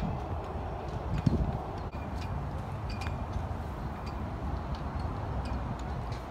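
Outdoor ambience on an open putting green: a steady low rumble and hiss, with one short thump about a second in and a few faint ticks.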